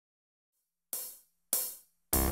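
Two hi-hat hits from a drum machine, about half a second apart, each bright and ringing off quickly, breaking a dead silence about a second in.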